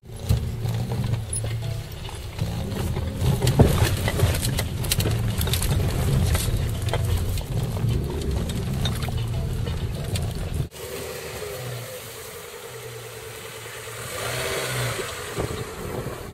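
A motor vehicle's engine running, loudest in the low end. The sound cuts off suddenly about two-thirds of the way through, leaving a quieter, different background.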